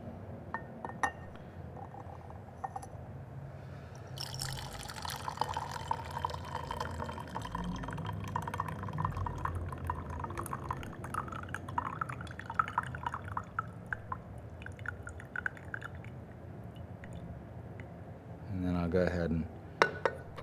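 Tea poured from a clay gaiwan into a glass pitcher: a steady trickling stream for about twelve seconds that thins into separate drips near the end. A light click comes about a second in.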